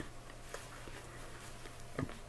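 Quiet room tone with a steady low hum, broken by a faint click about half a second in and a few softer ticks.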